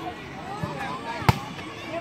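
A volleyball serve: one sharp slap of the hand on the ball about a second in, over the voices of a chattering crowd.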